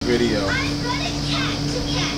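Young children's voices chattering and calling out, with rising squeal-like calls about half a second in, over a steady hum.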